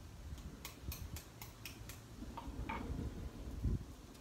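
An egg's shell being tapped to crack it: about seven light, sharp clicks in quick succession over the first two seconds, then softer handling of the shell and a low thump near the end.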